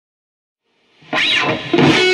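Silence, then about a second in an electric guitar starts playing suddenly. The first note swoops up and back down in pitch, and quick-changing notes follow.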